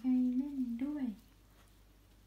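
A woman's voice speaking in a drawn-out, sing-song tone, stopping after about a second.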